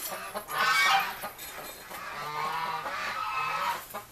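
Geese honking repeatedly, loudest about half a second in.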